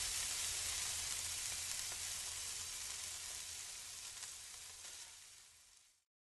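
Hissing, faintly crackling tail of a logo animation's burst sound effect, fading steadily and stopping about five seconds in.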